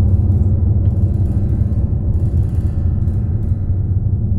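Low, dark drone of a film soundtrack that holds steady throughout, with a faint patchy clicking texture high above it.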